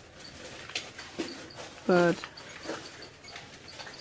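Radiation counter clicking faintly and irregularly at a low count rate.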